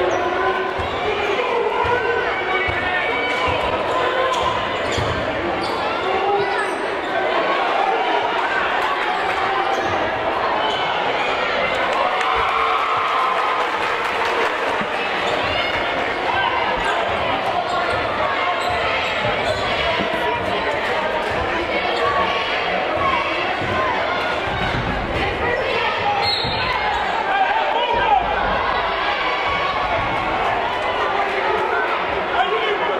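A basketball dribbling on a hardwood gym floor, with many spectators talking at once in a steady, echoing hall.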